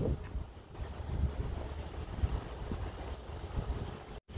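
Wind buffeting a phone's microphone while walking outdoors: an uneven low rumble that rises and falls.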